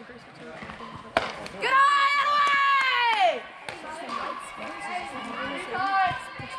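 A softball bat hitting a pitched ball with one sharp crack about a second in, followed by a long, high shout from the spectators that falls off at the end.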